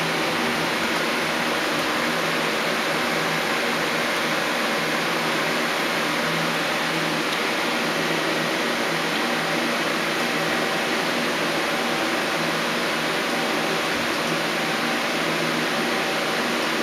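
Okuma Howa 2SP-V5 twin-spindle CNC vertical turning center running under power with no cutting: a steady machine hum made of several low, even tones over a hiss, without knocks or changes.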